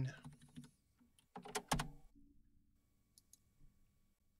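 Keystrokes on a computer keyboard: a few scattered, irregular key presses, with the loudest cluster about a second and a half in and a few faint taps later.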